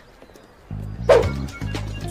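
Background music with a deep bass line that comes in just under a second in, with a short, sharp sound about a second in.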